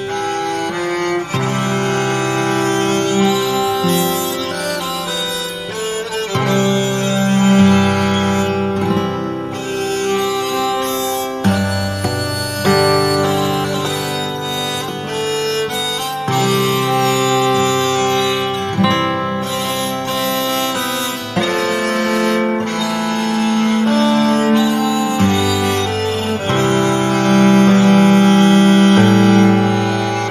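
Acoustic guitar with its strings kept ringing by a homemade EBow-like sustainer, playing a slow melody of long held, violin-like notes. The notes are fretted with hammer-ons, with an occasional strum.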